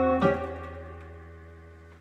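Digital piano: a final chord struck about a quarter second in, over a held low bass note, then left to ring out and fade away.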